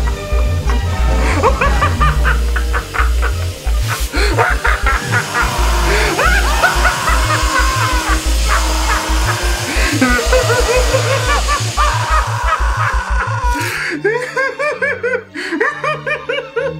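Music with a heavy bass line, with a man laughing over it; near the end the bass thins out and the laughter stands out more.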